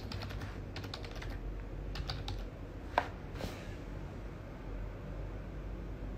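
Typing on a keyboard: quick runs of key clicks in the first second and a half and again around two seconds in, with one louder click about three seconds in, over a low steady hum.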